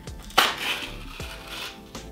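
Safety seal being peeled off an ice cream pint: a sharp rip about half a second in, then about a second of crinkly tearing. Soft background music plays underneath.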